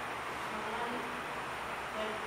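A steady, even buzzing hiss, with a woman's voice faintly reading aloud under it early on.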